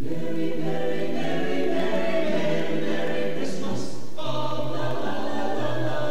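Chamber choir singing in several parts, beginning together at the start, with a hissed 's' sound a little past the middle and a new chord about four seconds in.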